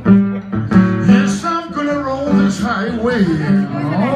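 Acoustic guitar playing a blues with sharp strummed chords near the start and about a second in, a man's voice singing along in the second half.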